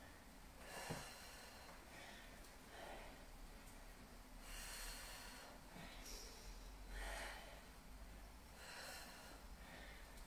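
A woman's faint breathing, with short hissy breaths every second or two as she works through weighted squat pulses.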